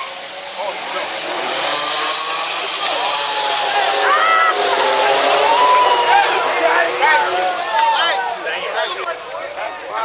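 Cars launching off the line in a drag race, including a Buick Grand National, their engines rising in pitch as they accelerate away. From about three seconds in, spectators shout and cheer over them.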